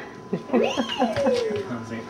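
A baby of about one year crying out in one long whine that rises in pitch and then falls away, with a cat-like, meow-ish quality.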